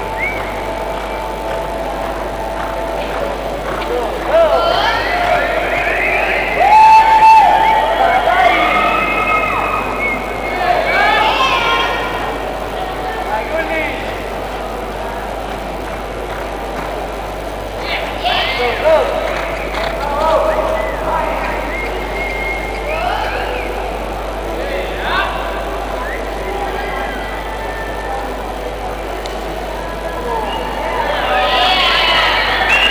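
Voices talking on and off, loudest about seven seconds in.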